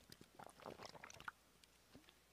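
Faint swallowing and gulping as a person drinks water straight from a small plastic bottle: a short run of soft clicks and gulps starting about half a second in and lasting under a second.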